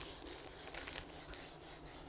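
Faint rhythmic scratching or rubbing, about five short strokes a second.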